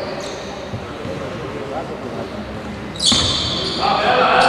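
Spectators talking and a basketball bouncing in a large, echoing sports hall during a free throw. About three seconds in, a sudden louder burst: a shrill whistle over louder voices.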